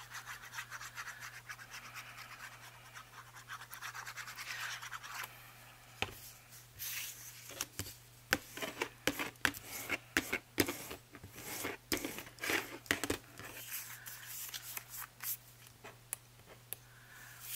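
The nozzle of a plastic glue squeeze bottle scratching along paper as a line of glue is laid on, for about five seconds. Then a bone folder rubs and presses over the glued paper pocket in quick strokes, with a run of short sharp scrapes and taps.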